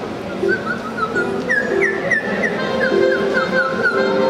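Live electronic ensemble music from theremin, melodion, piano and Tenori-on: a run of short chirping slides in pitch, a few a second, over short held lower notes.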